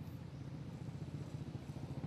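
A small engine running steadily, a low hum with a fast, even pulse.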